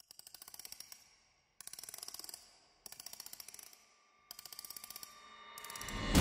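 Faint electronic ticking sound effect for a digital countdown clock, in five short bursts of rapid clicks, each under a second long. Near the end a swell rises and builds into loud music.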